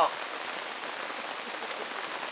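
Steady rain falling, an even hiss without breaks.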